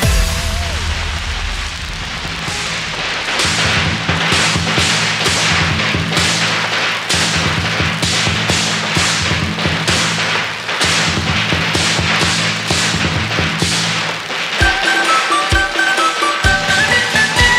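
Firecrackers going off in a long run of sharp, irregular cracks, several a second, over a steady low drone.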